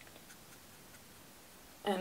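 Faint scratching of a watercolour brush worked in paint on a plastic palette, with a few small ticks. A woman starts speaking near the end.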